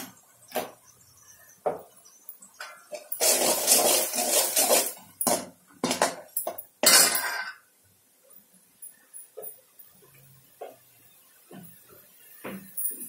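Steel ladle scraping and knocking against a metal kadai while stirring masala powder into a fried onion-tomato base: scattered clinks, a dense stretch of scraping a few seconds in, and a louder stroke about halfway through, then only light ticks.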